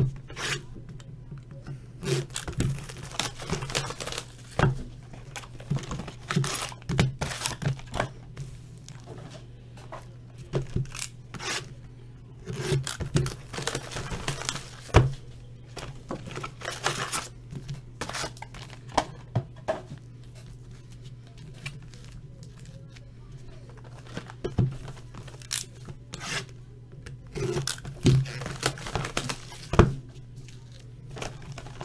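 Trading-card boxes being opened and handled: cardboard tearing, foil packs crinkling, and short scrapes and taps on a table in irregular bursts. A steady low hum sits underneath.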